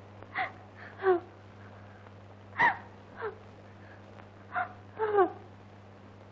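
A woman sobbing: about six short, gasping cries, each falling in pitch, over a steady low hum.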